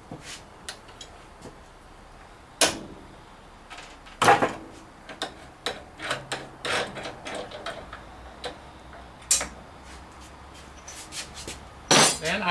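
Scattered metal clicks and knocks as a drill chuck is worked out of a milling machine's spindle, with two sharper knocks about two and a half and four seconds in and lighter clicks after.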